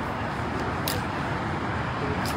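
Steady outdoor background noise with a single short click a little under a second in.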